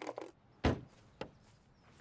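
A single dull thump about two-thirds of a second in, followed by a fainter click about half a second later.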